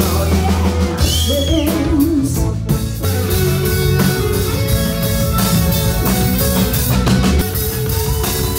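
Live rock band playing on drum kit, electric guitar and bass guitar, with a woman singing over the first couple of seconds; the drumming turns busier and more driving from about three seconds in.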